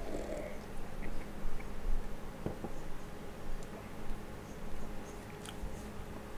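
A man sipping and swallowing beer from a glass, with a soft slurp at the start and a few faint small clicks, over a steady low electrical hum.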